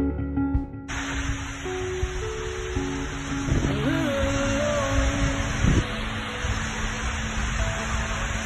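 Background music over the steady rushing roar of a waterfall. The roar comes in about a second in and is heard close to the falling water.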